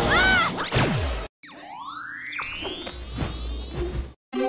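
Cartoon sound effects over music: a short pitched sound that bends up and back down, then a quick falling glide. After a brief silent break about a second in, a long whoosh climbs steadily in pitch for about two and a half seconds, a transition sweep between clips.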